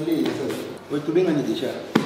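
Spoken dialogue, with a single sharp click just before the end.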